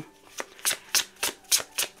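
A tarot deck shuffled by hand: a run of quick, light card clicks, about three or four a second.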